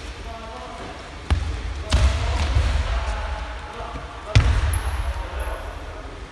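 Heavy thuds of wrestlers' bodies and feet hitting the mats during freestyle wrestling drills in a large gym hall, with three sudden louder impacts a little after one second, at about two seconds and past four seconds, over a low background of voices.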